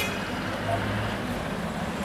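Street traffic with a motorcycle engine running as it passes close by, a steady low hum under the general road noise.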